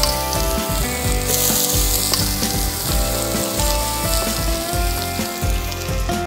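Halibut fillets frying in hot oil in a cast iron skillet over an open fire: a loud, steady sizzle that cuts in just before and stops sharply at the end.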